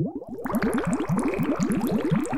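Bubbling water sound effect: a rapid run of short rising bloops, about ten a second. About half a second in, a brighter layer of small crackling pops joins it.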